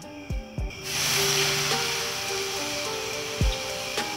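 Campfire being put out with water: a loud hiss of steam starts about a second in and slowly fades. Background music with low drum hits plays under it.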